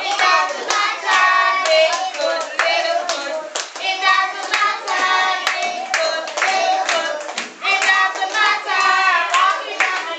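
A class singing a song together, with steady hand claps keeping time throughout.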